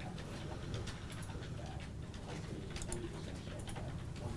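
Low steady room hum with scattered faint clicks, typical of a computer mouse and keyboard being worked at a trading desk.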